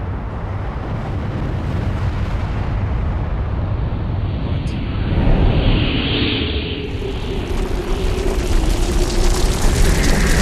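Nuclear-blast sound effect: a continuous deep rumble that grows steadily louder, with a brief hissing rush about five to seven seconds in.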